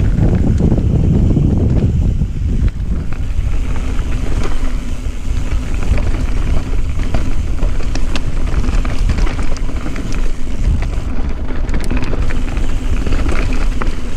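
Mountain bike riding fast down a dry, rocky dirt trail: wind rushing over the camera microphone, with the tyres rolling over gravel and sharp clicks and rattles from the bike over rocks.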